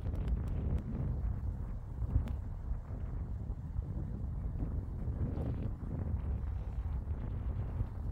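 Wind buffeting the phone's microphone: a continuous low rumble that rises and falls.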